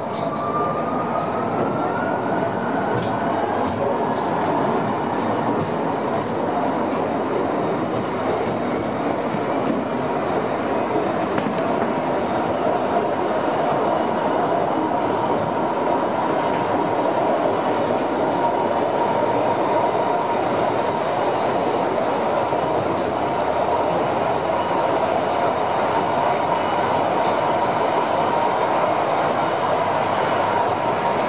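The Perce-Neige funicular running fast down its tunnel, heard from inside the car: a steady rush and rumble of wheels on rail, with a steady whine running through it. A second whine rises in pitch during the first couple of seconds.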